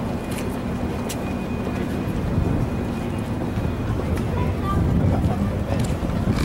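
Outdoor ambience: a steady low rumble with indistinct voices of people nearby.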